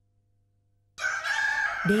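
A rooster crowing, one long high call that starts abruptly about a second in after near silence.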